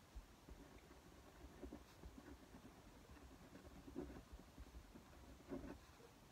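Faint scratching of a pen writing on paper in short, irregular strokes, over near-silent room tone.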